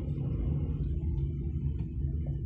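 Low, steady rumble of a car driving slowly, heard from inside the cabin: engine and tyre noise with no sharp events.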